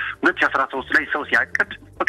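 Speech only: a radio presenter talking without pause, with a faint music bed underneath.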